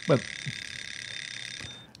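A high, even ringing buzz like an alarm clock bell, held for about a second and a half and then cut off suddenly. It follows ticking in the seconds before.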